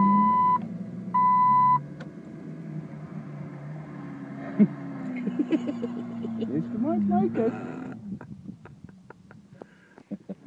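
Two short electronic beeps right at the start, over a vehicle engine running steadily under load, with a single sharp knock about four and a half seconds in and voices briefly; the engine sound drops away about eight seconds in.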